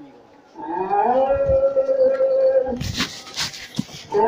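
A voice holding one long sung or chanted note: it slides up into the note about half a second in and holds it for about two seconds. Near the end come rustling noise and a few knocks.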